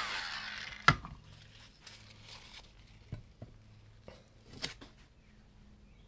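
A small electric mini blower winding down with a falling whine as it is switched off, then a sharp knock about a second in and a few faint clicks and taps of handling.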